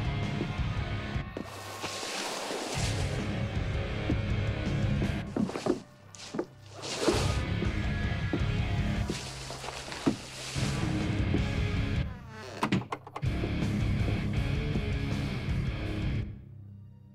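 Background music with heavy low notes, dipping briefly about six seconds in and again near thirteen seconds.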